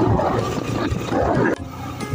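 Wind rushing over the camera microphone on a moving motorcycle, a loud, dense rumble with the engine beneath it. It cuts off suddenly about one and a half seconds in.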